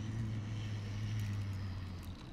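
A low, steady engine-like hum, a voice imitating a car engine as toy cars are pushed along. It slides down in pitch into a held drone and trails off near the end.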